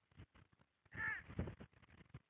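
A single short, faint call about a second in, falling in pitch, with a few faint clicks around it.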